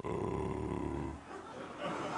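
A man's drawn-out, hesitant "euh" lasting a little over a second, then fading to quieter sound.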